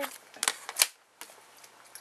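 Hard plastic card cases clicking as they are handled on a desk: a few sharp clicks in the first second.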